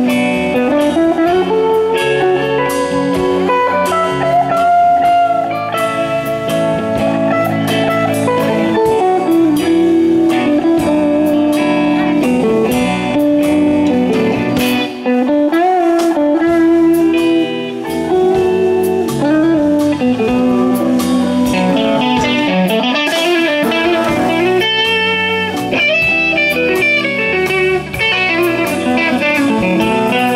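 Live blues-rock band playing an instrumental passage: a lead electric guitar plays bent notes over rhythm guitar, bass and drums.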